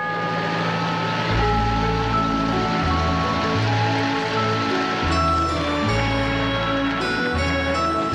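Instrumental TV opening theme music: held chords over a bass line that moves to a new note every second or so.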